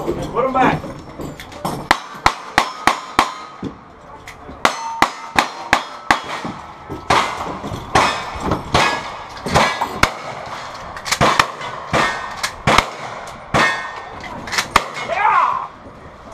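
Strings of rapid gunshots at steel targets, mixed with the clang of the hit steel plates. The first quick run of about eight shots comes about two seconds in, and further strings follow after short pauses.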